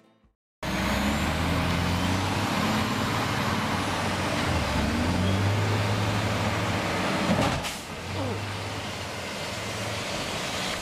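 Heavy truck engine running as the truck drives slowly past on the road, cutting in about half a second in, with a brief sharp hiss about seven and a half seconds in.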